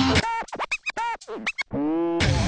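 A short electronic transition sting in DJ record-scratch style: about eight quick swooping pitched chirps, then a held tone that rises slightly near the end.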